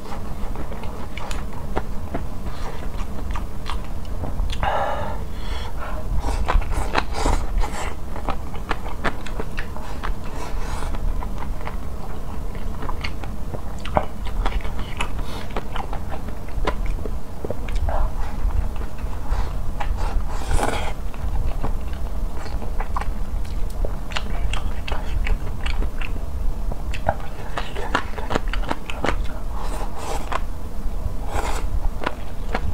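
Close-miked chewing and biting of a mouthful of meat and vegetables over rice, with many short wet clicks and smacks and a few longer breaths or slurps, over a steady low rumble.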